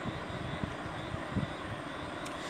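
Steady low background rumble with faint hiss, with no speech.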